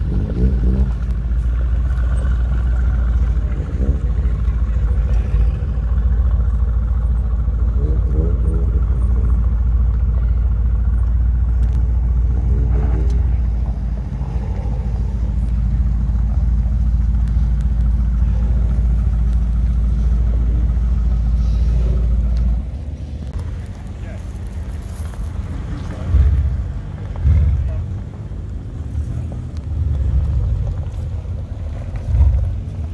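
Mercedes-AMG GT R's twin-turbo V8 idling with a deep, steady rumble. About three quarters of the way through the rumble drops away, and two short, louder bursts of engine sound follow near the end. People's voices are heard throughout.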